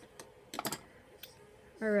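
A few light, sharp clicks and taps from makeup items being handled: one, then a quick cluster about half a second in, then one more. A woman starts speaking near the end.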